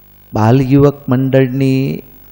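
A man's voice at a microphone in a drawn-out, chant-like delivery, starting about a third of a second in.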